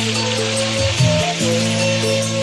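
Dangdut band playing an instrumental passage: a sustained melody line over bass and chords that change every second or so, with a steady hiss over the top.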